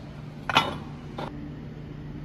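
Steel connecting rods clinking against each other as they are handled: one sharp, ringing metallic clink about half a second in and a lighter one a little over a second in, over a low steady hum.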